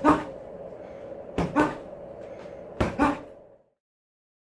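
Boxing gloves striking a doorway-mounted Quiet Punch punching bag in quick one-two pairs of thuds, about one pair every second and a half. The sound cuts to silence near the end.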